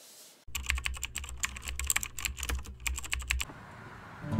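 Fingertips tapping quickly on a sketchbook, a dense run of light clicks like typing, over a low steady hum; it starts about half a second in and stops shortly before the end.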